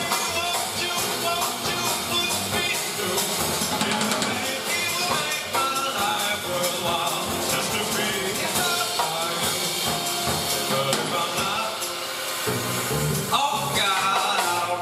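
Live jazz band playing: grand piano, upright double bass and drum kit, at a steady, full level.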